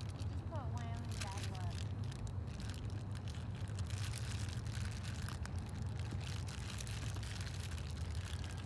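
A steady low rumble, with a faint voice heard briefly about half a second to a second and a half in.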